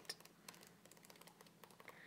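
Very faint, irregular light ticks of paper pages being turned by hand in a pad of designer series paper, close to silence.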